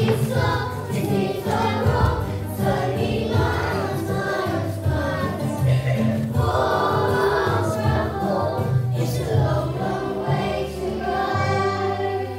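A group of young children singing a song together over backing music with a steady bass line.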